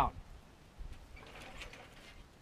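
Faint rustling and light clicking of branches and twigs being handled and pushed into a hanging basket, starting about a second in.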